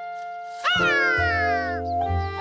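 A cartoon monkey's high-pitched vocal call starts about two-thirds of a second in: a quick rise in pitch, then a long falling glide. Soft background music with held notes plays under it.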